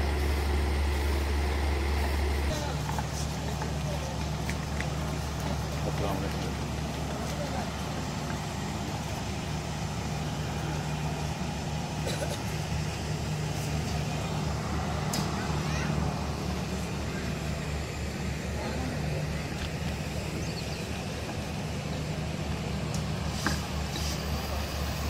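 A steady low mechanical hum that shifts slightly about two and a half seconds in, with faint voices in the background.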